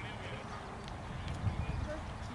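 People talking at a distance, faint and indistinct, over irregular low rumbling thumps that are loudest about one and a half seconds in.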